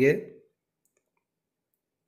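A man's speech trailing off about half a second in, then near-total silence, as if the sound track were muted.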